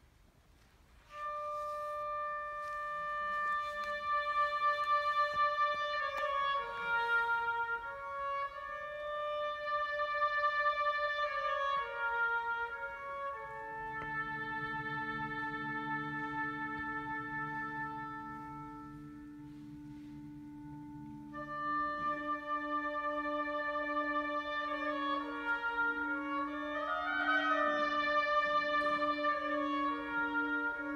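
Wind ensemble beginning a piece about a second in, with long held notes entering one over another. It grows quieter around twenty seconds, then the full band comes back in and swells near the end.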